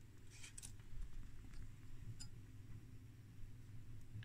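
Faint room tone with a low steady hum and a few soft clicks and rustles of handling.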